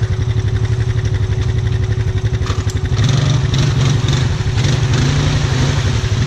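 ATV engine pulling under load through a deep, water-filled mud rut, its low pulsing rumble rising in pitch and getting louder about halfway through as the throttle opens, with muddy water splashing.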